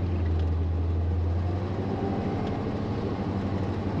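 A 1987 GM squarebody truck's fuel-injected 305 V8 running as the truck drives along, over road noise. Its steady low drone weakens a little under two seconds in.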